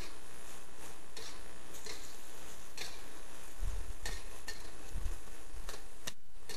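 Long metal spatula scraping and knocking against a wok as cabbage is stir-fried, a handful of irregular strokes over a steady sizzle.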